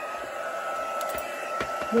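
Craft heat tool (embossing heat gun) running at a steady whine and blowing noise after being switched on, used to melt away fine strings of glue on the card, with a few light clicks of handling.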